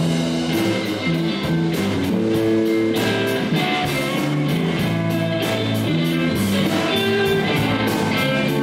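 A live rock band plays an instrumental stretch between sung lines: electric guitar leads over bass guitar and a drum kit keeping a steady beat.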